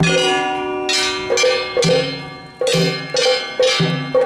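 Large brass hand-held gongs (kane) of a Japanese festival float's hayashi band, struck repeatedly in a loose rhythm of about two strikes a second. Each loud clang rings on and overlaps the next.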